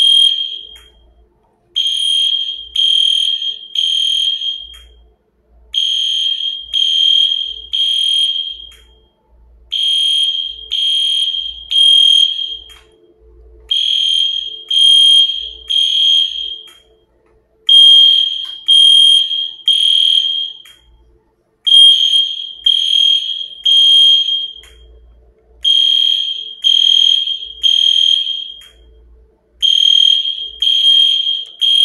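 Smoke alarm sounding a high beep in groups of three with a short pause between groups, about one group every four seconds: the three-beep temporal pattern used for fire alarms.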